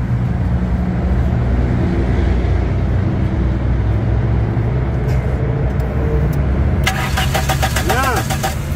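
Car engine cranking on its starter without firing, with no current reaching the ignition coil. A rapid ticking joins in near the end.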